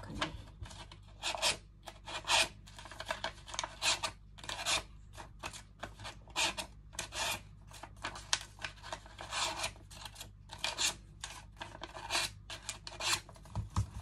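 Colored paper being scrunched and rubbed between the hands, a long, irregular string of short rustling crunches, about one or two a second.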